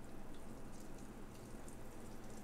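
Enermax NeoChanger's ceramic-bearing pump running faintly as it speeds up toward 4000 RPM: a steady low hum with coolant swirling in the reservoir tube.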